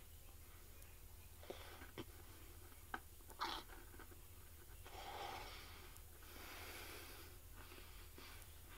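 Faint chewing of a crunchy white chocolate cookie with the mouth closed: a few small crunches and clicks in the first half, then two longer, soft breaths.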